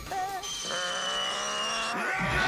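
Dramatic anime background music of held, steady tones with a thin high whine sinking slightly in pitch, after a brief snatch of voice at the very start.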